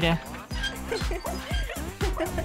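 Small dog-like yips and whimpers, a few short calls rising and falling in pitch, over light background music.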